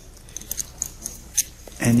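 Scattered short, faint clicks of poker chips being handled at the table, over a low steady room hum.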